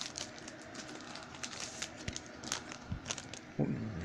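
Trading cards and pack wrapper being handled: scattered light crinkling and clicking of cardboard and foil, with a brief low vocal sound near the end.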